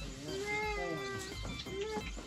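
A toddler's drawn-out whining cry, about a second long and falling slightly in pitch, followed near the end by a shorter rising one.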